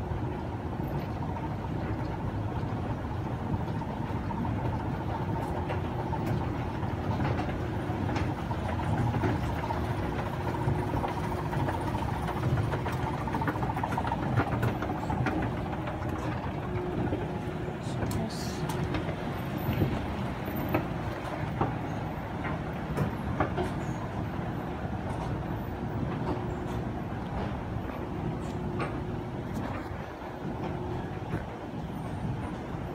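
Fujitec escalator running: a steady low rumble from the moving steps and drive, with a steady hum over it and a few faint clicks near the middle.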